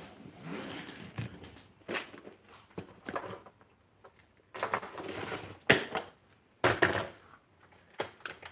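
Rummaging and handling of gear: scattered knocks, clicks and rustles of objects being picked up and moved, with brief quiet gaps and the sharpest knocks near the end.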